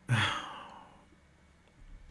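A man sighs once near the microphone: a brief voiced start, then a breathy exhale that fades away within about a second.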